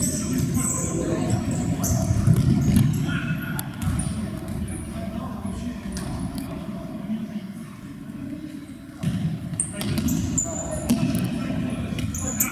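Indoor futsal play in a large echoing sports hall: trainers squeaking on the hard floor, the ball being kicked with sharp knocks a few times, and players shouting indistinctly.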